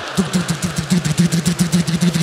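A man imitating a combine harvester's engine with his voice into a microphone: a rapid, even, rattling chug that starts just after the beginning.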